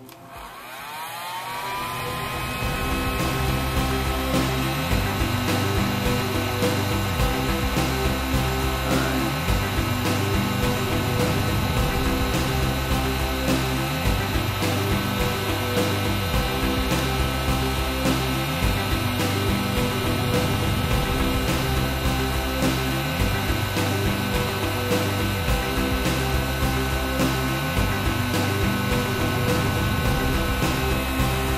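Heat gun switched on, its motor whine rising in pitch over the first two seconds and then running steadily with a blowing hiss. Background music with a steady beat plays underneath.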